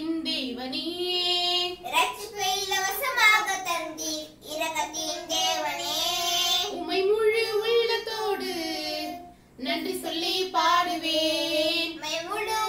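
Children singing a worship action song together with a woman, in phrases with held notes and a brief break between lines a little past nine seconds in.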